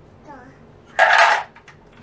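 A brief, loud clatter of wooden pieces in a wooden shape-sorter box about a second in, with a faint small voice just before it.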